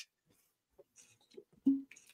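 A mostly quiet stretch with faint small noises and one short voiced sound, like a brief hum or chuckle, near the end.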